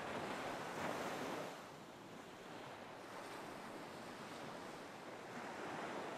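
Ocean surf: a wave washes in right at the start, then settles into a steady, quieter wash of water.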